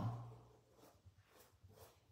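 A voice trailing off at the start, then near silence with a few faint, soft strokes of a paintbrush on fabric.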